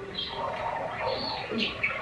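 A woman's voice talking quietly through a smartphone's speaker during a phone call, thin and tinny with little high end.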